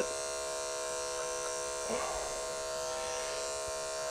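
Electric pet grooming clippers running with a steady buzz as the blade works through matted fur between a dog's paw pads.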